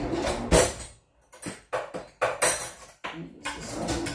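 Metal cutlery clattering and jingling in a kitchen drawer, in irregular bursts with a few sharp knocks.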